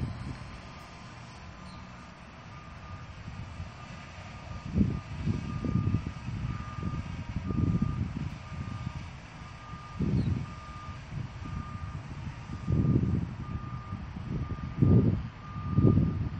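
An electronic beep at one steady pitch, repeating over and over, with irregular low rumbles coming and going underneath.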